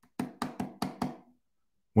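Knuckles knocking on the cover of a hardcover book: five quick, sharp knocks in about a second.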